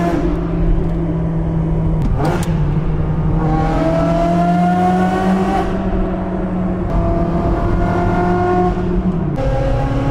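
Ferrari 360 Modena's V8 pulling through the gears, heard from inside the cabin in a road tunnel. The engine note climbs and drops at an upshift a little past halfway, then climbs again and drops at another shift near the end. A sharp click about two seconds in.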